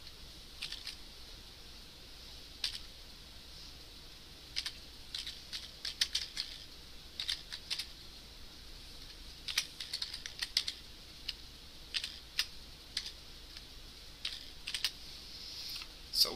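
Typing on a computer keyboard: irregular runs of quick keystrokes with short pauses between them, over a steady faint hiss.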